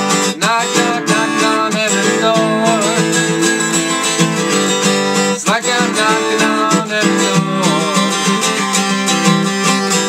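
Acoustic guitar strummed in a steady rhythm, with a man's voice singing over it in two short phrases, one near the start and one around the middle.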